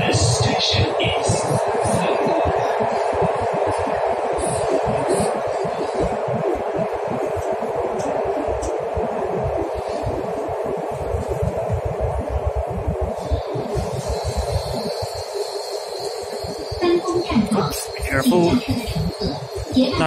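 Metro train heard from inside the car, running with a steady rumble and hiss that eases as it slows for a station. About two-thirds of the way through a steady high whine comes in, and a voice is heard near the end.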